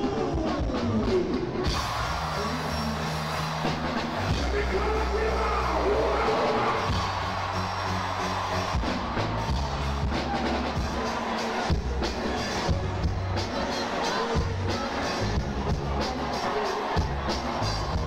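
Live concert music played loud over a PA, with a drum beat and deep bass notes that change every couple of seconds, a voice singing at times, and crowd noise underneath.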